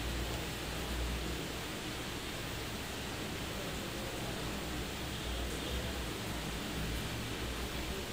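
Steady hiss of microphone background noise with a low hum underneath: room tone between spoken lines.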